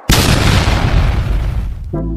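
Firework burst sound effect: a sudden loud boom right at the start, with a noisy tail that fades away over about two seconds.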